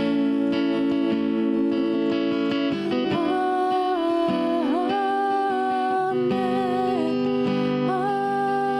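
A woman singing a slow song in long held notes with a slight waver, accompanying herself on an acoustic guitar.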